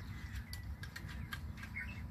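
Galvanised steel wire clicking and rattling in short irregular ticks as its loose coil is handled and wound around the top of a bamboo pole, with a faint bird chirp near the end.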